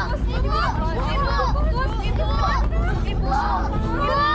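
Several voices talking and crying out over one another, with a steady low hum underneath.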